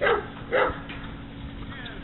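Two short, loud calls about half a second apart, near the start.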